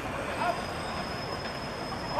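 Outdoor ambience on a football pitch with a brief distant shout from a player about half a second in. A faint, steady high-pitched whine sets in just after the start.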